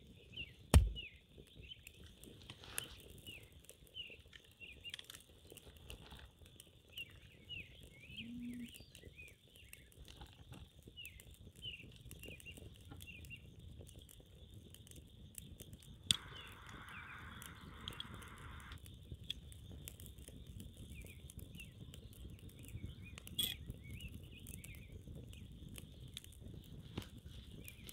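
Small stick fire crackling in a rocket stove with scattered light pops, over repeated bird chirps and a steady high-pitched chorus. A heavy thump about a second in, and a click followed by a few seconds of hiss partway through.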